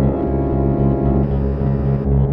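Electric guitar run through effects units, sounding as a dense layer of sustained low droning tones in free-improvised experimental music.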